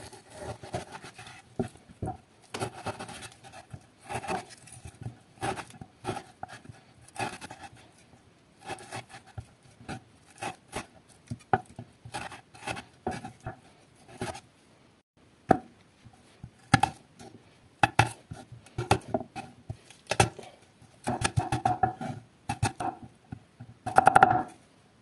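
Kitchen knife slicing raw meat on a wooden cutting board, the blade knocking the board at an irregular pace. Near the end the strokes come in a quick run as garlic cloves are chopped.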